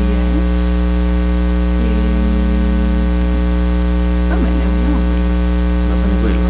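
Loud, steady electrical mains hum with a buzzy stack of overtones, carried through the sound system or recording chain.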